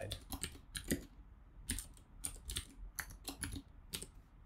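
Typing on a computer keyboard: a run of irregular keystrokes, with a short pause about a second in.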